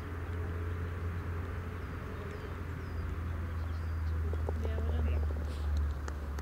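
Outdoor course ambience: a steady low rumble with a few short, faint bird chirps, and faint distant voices near the end.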